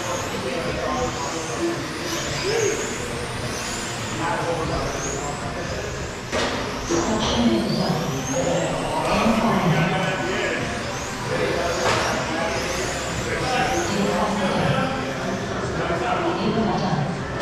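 Electric 1/10-scale RC touring cars with 21.5-turn brushless motors racing on a carpet track: repeated high motor whines that rise in pitch as the cars accelerate, with people talking in the background and a sharp knock about six seconds in.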